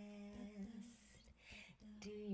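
A woman humming a steady held note into a microphone; the note stops about two thirds of a second in, followed by two short breathy hisses, and a new held note begins near the end.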